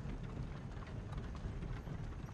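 Quiet background ambience under a dialogue pause: a low steady rumble with faint, scattered light knocks and clicks.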